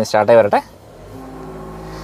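Land Rover Defender's petrol engine starting by push button about half a second in, then running at a quiet, steady idle that slowly grows a little louder.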